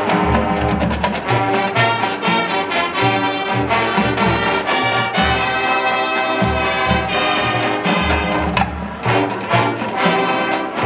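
High school marching band playing, with full brass chords over a steady low drum beat.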